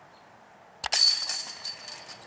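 A sharp click followed by a bright, metallic bell ringing that slowly fades: a subscribe-button sound effect.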